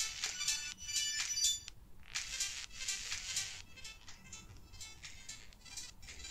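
Music playing through a Samsung Galaxy Buds FE earbud held up to the microphone. It sounds thin, nearly all treble with no bass, as an earbud speaker sounds in open air.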